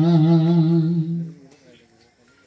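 A male voice humming one long, low held note through a microphone, with a slight wobble, dying away about a second and a half in.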